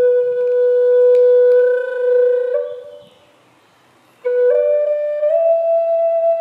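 Native American-style wooden flute playing a long held low note that fades away a little past halfway. After about a second's pause for breath, a new phrase begins low and steps up twice to a higher held note.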